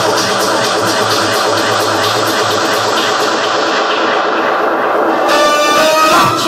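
Electronic dance music mixed live by a DJ on turntables and a mixer. The treble gradually dulls over a few seconds, then opens up bright again about five seconds in as a new melodic part comes in.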